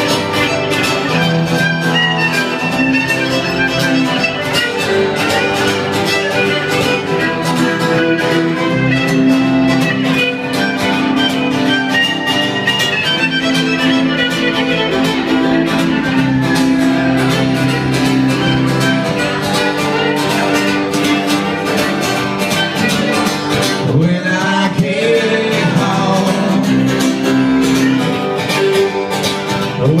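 Live acoustic bluegrass-style instrumental break: a fiddle playing the lead over two strummed acoustic guitars. Singing comes back in at the very end.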